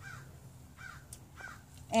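A few faint bird calls: short cries that rise and fall, spread through the pause over low outdoor background noise.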